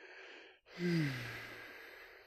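A man breathes in, then lets out a long audible sigh whose voiced tone falls in pitch and trails off. It is an exasperated sigh at a failed install.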